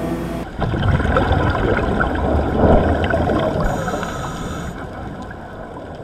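Underwater sound picked up by a diving camera: a muffled low rumble with gurgling bubbles and small clicks, fading out towards the end. A guitar chord rings out at the very start.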